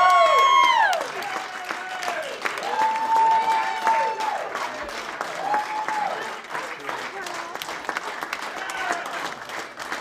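Audience applauding, a dense patter of clapping, with loud drawn-out calls from voices over it: one fading in the first second, another about three to four seconds in, and a shorter one near six seconds.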